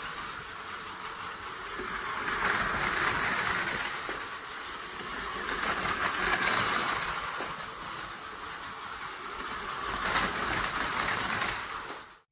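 Two battery-powered Tomy Plarail toy trains running together on plastic track: a steady whirring of small motors and wheels that swells and fades about every four seconds.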